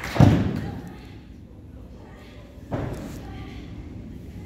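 A heavy thud on a pro-wrestling ring mat about a fifth of a second in, then a second, lighter thud near the end.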